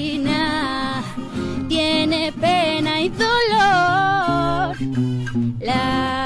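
A woman singing a slow, romantic song with long, wavering held notes, accompanied by a strummed acoustic guitar. The voice drops out briefly near the end and comes back in over the guitar.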